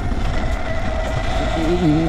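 Sur Ron electric dirt bike riding over grass: a steady whine from the electric motor and drivetrain over low rumble and wind noise. The rider starts speaking near the end.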